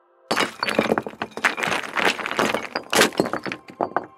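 A sound effect of something breaking apart: a dense clatter of many small fragments cracking and tumbling. It starts suddenly about a third of a second in, has a few louder crashes, and stops just before the end.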